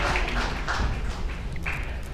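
Audience clapping, thinning out and fading away.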